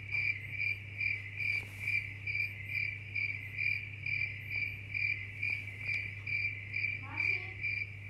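Cricket chirping in an even, steady rhythm, about two or three chirps a second, over a low steady hum.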